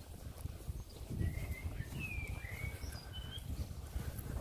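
A wild bird giving a few short whistled chirps, some sliding in pitch, over a steady low rumble.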